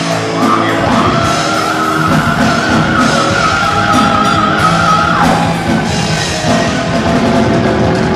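Heavy metal band playing live, with distorted electric guitars and drums. A long high note is held from about a second in until about five seconds in.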